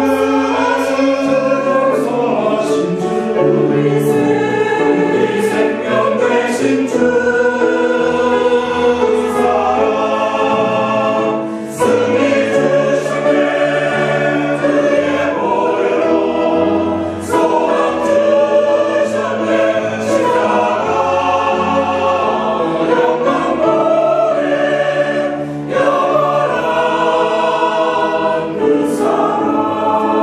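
Mixed church choir of men's and women's voices singing a hymn anthem with piano accompaniment, in long phrases with brief breaks between them.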